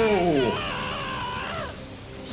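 A man's drawn-out "yo" fades, and about half a second in a young man's high-pitched, wavering cry of strain or pain from the anime's soundtrack takes over for about a second before dropping away.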